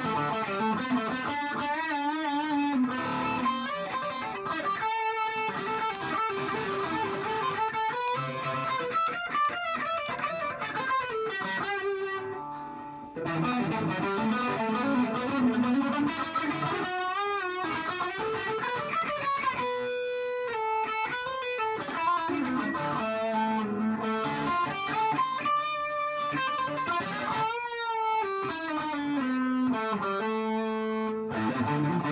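Swift electric guitar on its bridge humbucker, played as single-note lead lines through amp distortion, with sustained notes, vibrato and bends; its pickups sound dark and woolly. The notes die away briefly about twelve seconds in before the playing picks up again.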